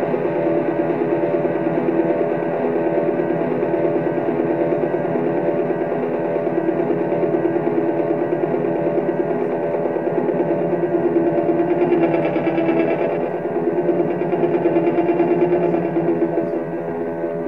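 Electric guitar sound run through effects pedals: a sustained, distorted, layered drone with a fast, even flutter. It keeps going while the strings are not being played, so it comes from a loop or effects held in the pedals. It grows a little louder and brighter in the last few seconds.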